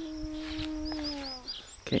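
A person's long, steady hum, held for about a second and a half and dipping slightly in pitch before it stops. A few short high chirps, a bird's, sound over it.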